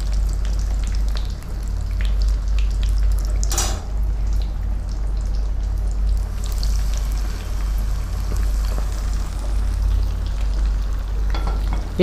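Breaded chicken pieces deep-frying in hot oil in a kadai: a steady sizzle with small crackles as a slotted spoon stirs the pieces and lifts them out. There is one sharp knock about three and a half seconds in, and a low hum runs underneath.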